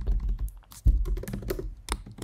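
Typing on a computer keyboard: a quick, uneven run of key presses as a word is typed out.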